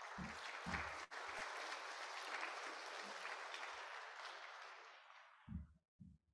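Faint audience applause that sets in right away and tapers off about five seconds in.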